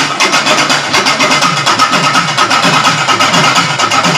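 Live folk drum ensemble of large frame drums and barrel drums played in a fast, dense rhythm, with a steady high note held above the drumming.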